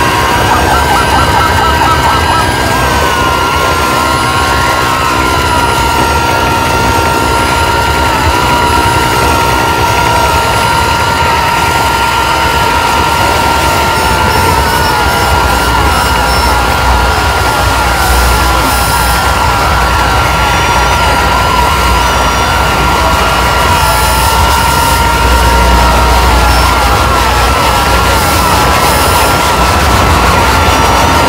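Harsh noise music: a loud, dense wall of noise with two high held tones that drift and wobble slightly in pitch, over a low rumble that thickens about halfway through.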